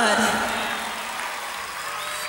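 A woman's voice through a stage microphone ends a phrase with a falling glide, then a short pause holding only faint, even hall noise from the PA and audience.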